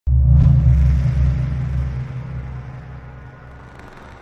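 Deep rumbling boom of a logo-intro sound effect. It hits suddenly at the start and slowly fades away over about four seconds.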